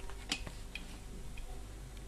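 A few faint clicks and taps as a soldering iron is picked up and its tip set against the small metal base of a car light bulb, over a low steady hum.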